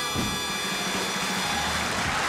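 Studio band music from a TV variety show performance, holding a steady sustained chord as the song number closes.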